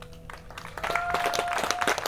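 An acoustic guitar's last chord dies away, then an audience starts clapping about two-thirds of a second in. One voice gives a single held call over the applause.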